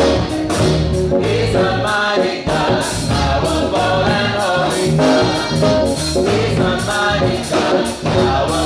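Gospel choir singing with a live band: a drum kit keeping the beat under an electric bass guitar.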